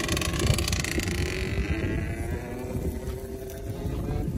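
Wind buffeting the microphone outdoors: a steady, dense low rumble, with a high hiss in the first half that fades away.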